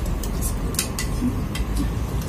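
A few light clinks of metal utensils against ceramic plates and bowls during a meal, over a steady low background rumble.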